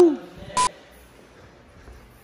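Two short beeps about half a second apart, each a steady high tone with a harsh edge, the first overlapping the end of a short vocal exclamation.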